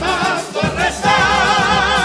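Male carnival comparsa chorus singing in harmony with wide vibrato, a short break about half a second in and then a long held chord, over Spanish guitars and a bass drum.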